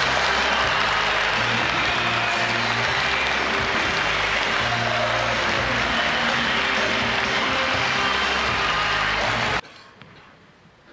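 Audience applauding over loud music with a repeating bass line; both cut off suddenly near the end.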